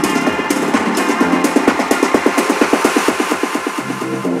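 House/EDM dance track in a build-up: a rapid, even snare roll over synths, with the deep bass cut out.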